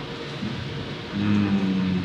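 A man's voice holding one long, level hesitation hum. It starts about a second in, after a quiet pause.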